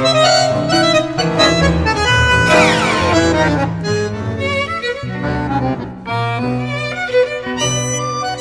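Instrumental tango played by a bandoneon-led ensemble with violins and cello. The strings and bandoneon move through the melody over a firm bass line, with a quick downward glide about two and a half seconds in.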